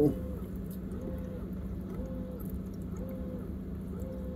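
Steady low electrical hum, typical of a running aquarium pump. Over it, a faint pitched tone rises and falls about once a second.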